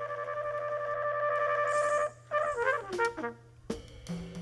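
Unaccompanied flugelhorn in a live jazz performance, holding one long note for about two seconds, then playing a short run of falling notes. A low steady hum sits underneath.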